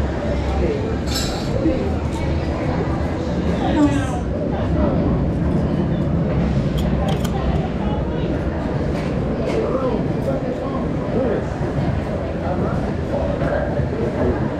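Indistinct chatter of riders and crew in a roller coaster loading station, with a few brief metallic clinks.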